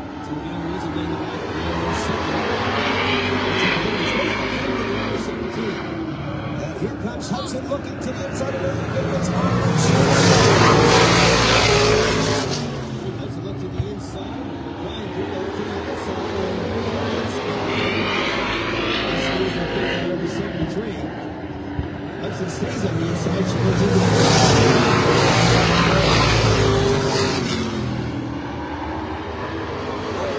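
A pack of Limited Late Model stock cars racing around a short oval, their V8 engines running hard with rising and falling pitch as cars go through the turns. The sound builds to a loud pass twice, about 14 seconds apart, as the field comes by close.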